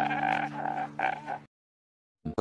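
A man sobbing and wailing in a strained, croaking voice, with a steady low drone under it; it cuts off abruptly about one and a half seconds in, leaving dead silence.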